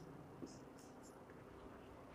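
Near silence in a small room, with a faint short stroke of a marker on a whiteboard about half a second in.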